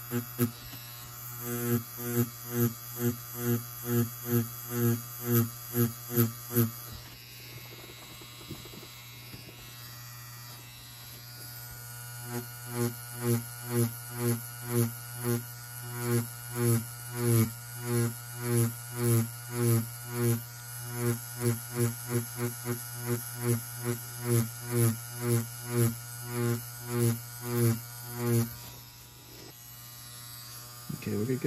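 Electric tattoo machine buzzing with a magnum needle during whip shading on practice skin. The buzz swells in regular pulses about twice a second, one with each whipping stroke. There is a steadier stretch of several seconds partway through, and the pulsing stops shortly before the end.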